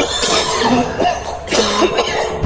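A person coughing hard in two loud fits, the second starting about a second and a half in.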